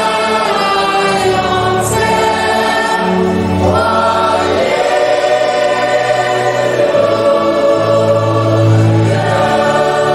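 Choir singing a slow hymn in long held notes, with low sustained notes underneath.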